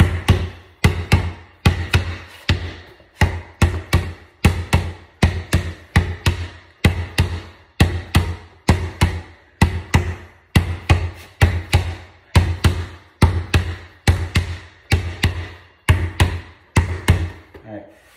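A basketball dribbled on a concrete floor, bouncing about two to three times a second in a steady rhythm, each bounce a sharp thump with a short low ring.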